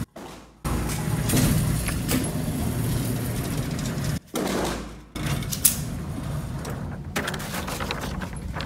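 Motorized shooting-range target carrier running along its overhead track, reeling a paper target back to the booth, with a steady whirring noise that cuts out briefly a few times. A single sharp crack a little past halfway.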